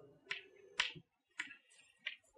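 Chalk tapping on a chalkboard as numbers are written: three light, sharp taps about half a second apart, with fainter ticks between.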